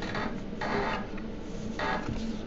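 Trading card being handled: three short rubbing, sliding swishes of card stock against fingers and other cards.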